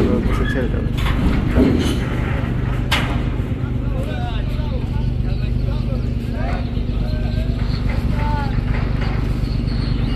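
Steady low drone of a passenger launch's engines running while it lies alongside the pontoon, with a few sharp knocks in the first three seconds. Voices calling in the background.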